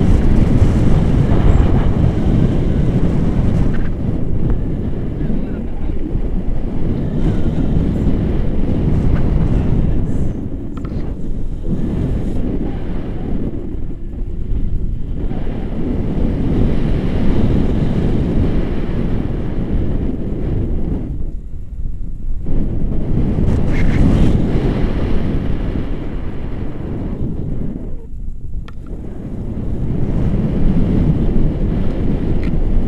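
Airflow buffeting an action camera's microphone in paraglider flight: a loud, gusting low rumble that rises and falls, easing briefly a few times.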